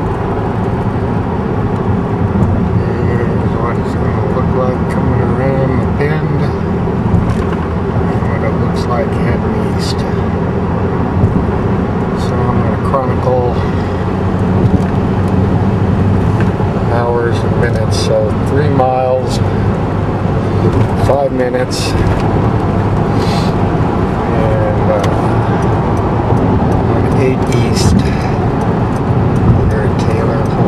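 Steady engine and road drone heard from inside a car's cabin while cruising on the highway.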